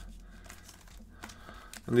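Foil wrappers of sealed hockey card packs crinkling faintly as hands pick them up and shuffle them into order, with a few light ticks over a low steady hum.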